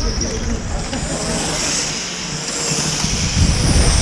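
A 1/8-scale radio-controlled on-road race car running round the track with a steady high-pitched engine note that swells and fades as it passes, over a gusty low rumble.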